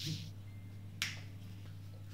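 Two sharp clicks about a second apart from small plastic parts of an Ulanzi tripod/selfie stick being handled, over a steady low hum.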